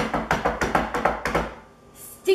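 A drum roll played with both hands patting rapidly on a kitchen countertop, a quick run of taps that stops about a second and a half in.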